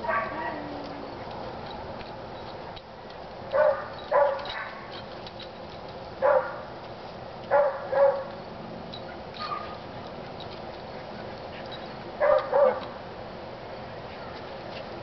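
Small terrier-type dog giving short, sharp play barks, mostly in quick pairs, with gaps of a couple of seconds between: excited barking for a frisbee to be thrown.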